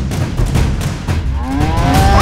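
A cow mooing, one call that rises and then falls in pitch, starting about one and a half seconds in, over low drumbeats of background music.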